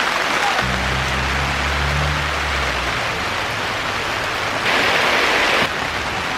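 Heavy rain falling, a steady dense hiss that swells brighter for about a second near the end. A low hum sounds under it for a couple of seconds, starting about half a second in.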